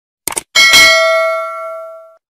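A short double click of a mouse-click sound effect, then a notification-bell ding strikes once about half a second in and rings on, fading away over about a second and a half.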